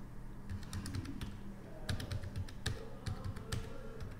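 Computer keyboard typing: a quick, irregular run of about ten key clicks as a string of digits is entered. A steady low hum sits underneath.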